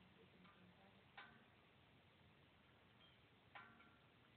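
Near silence: faint outdoor background, broken by two brief, faint, sharp pitched blips about two and a half seconds apart.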